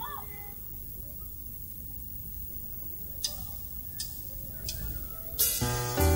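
Lull between songs on a mixing-desk recording of a live band: a low steady hum with a few faint clicks. Near the end, after a sharper click, a stage keyboard sets in with a held piano chord, opening the next song.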